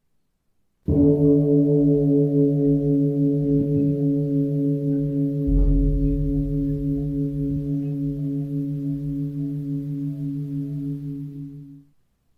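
A large bell struck once about a second in. Its low tones ring with a slow pulsing waver and fade gradually over about eleven seconds before cutting off.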